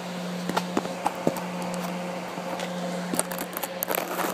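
Scattered light clicks and knocks of a sheet-metal gusset and a dimple die being handled and set in place on a press, coming faster near the end, over a steady low hum.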